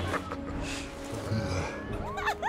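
Background film score with a sound effect: a short noisy swish about two-thirds of a second in, over a low hum.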